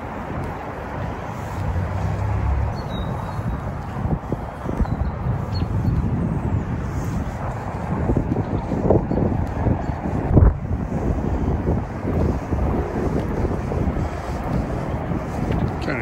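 Wind buffeting an open microphone, a rough, gusting rumble with no pause, and a brief knock about ten seconds in.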